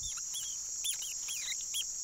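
Night-time tropical forest insect chorus: a steady, high, cricket-like trill. Over it come about seven short, high chirps that rise and fall, spread unevenly through the two seconds.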